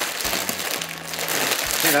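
Plastic crisp bags crinkling continuously as they are handled, with a Doritos bag being pulled open at the top.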